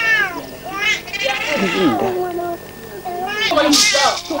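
Infant crying in high, arching wails about a second long, once at the start and again just before the end, with a lower adult voice in between.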